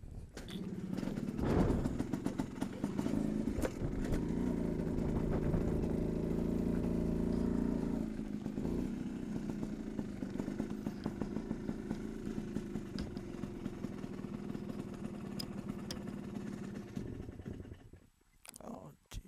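Small Polini-tuned motorbike engine running, louder and revving in the first eight seconds, then settling to a steady idle.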